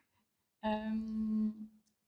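A woman's single held "mmm" hum at a steady pitch, lasting about a second, a thinking pause in her speech.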